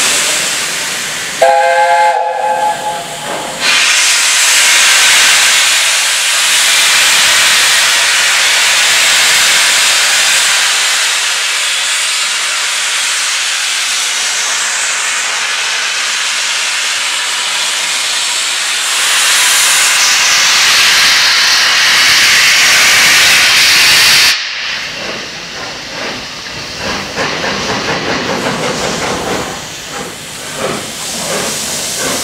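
LNER A4 Pacific steam locomotive 60019 'Bittern' giving a short blast on its chime whistle about two seconds in, then a long, loud hiss of steam that cuts off sharply about four seconds before the end. Near the end comes a quick rhythm of about four beats a second as the engine starts away.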